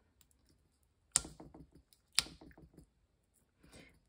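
Metal craft pokey tool picking at the backing of foam tape on a cardstock panel: two sharp clicks about a second apart, each followed by a quick run of small ticks.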